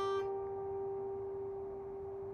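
Acoustic guitar's last fingerpicked melody note ringing out and slowly fading, its higher overtones dying away first while the main pitch sustains.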